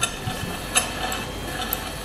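Salvaged lorry windscreen-wiper motor turning a screw shaft in a wooden prototype frame: a low running hum with irregular clicks and knocks, the shaft bouncing in its loose wooden mounts. Heard as played back through a laptop speaker.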